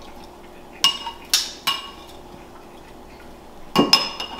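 Metal serving tongs clinking against a dish: four quick clinks about a second in, then two more near the end, each with a short metallic ring.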